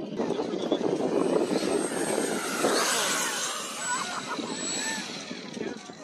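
Electric ducted-fan RC jet (70mm EDF) flying past, a rushing whine that swells to a peak around the middle and drops in pitch as it goes by, fading near the end.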